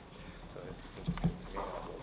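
Low murmur of voices and small handling noises around a microphone-equipped committee table, with a couple of soft knocks about a second in.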